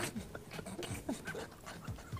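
Quiet, breathy laughter in short irregular bursts, stifled rather than spoken.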